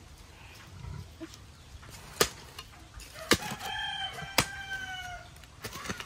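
A rooster crows once, a single call of about two seconds in the middle, rising slightly and then falling away at the end. A few sharp knocks of a hoe digging into soil come before, during and after the crow.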